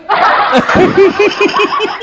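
Men laughing hard: a breathy burst of laughter that breaks into a quick run of short ha-ha pulses, about six or seven a second.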